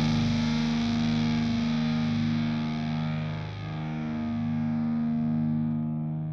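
Distorted electric guitar, run through effects, holding slow sustained notes at the close of a post-hardcore song. The treble dies away as the sound fades out.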